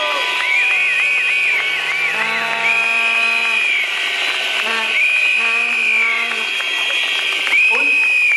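Protest crowd blowing whistles and horns: repeated high whistle blasts that rise, hold and fall, over lower held horn notes and crowd noise, a steady din of protest.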